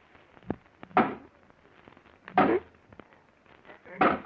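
Radio-drama sound effect of a pickaxe tapping through a vault's concrete floor: two heavy knocks about a second and a half apart, with lighter knocks and a crumbling smear between them, as the floor gives way.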